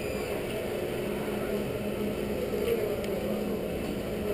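Steady rumble with a low hum from the all-terrain robot vehicle moving along a hard walkway floor.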